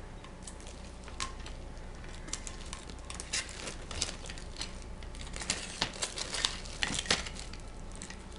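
Razor knife with a dull blade cutting clear plastic sheeting glued over a plastic critter keeper lid: irregular small crinkles, clicks and scrapes as the blade works along the edge and the film gives.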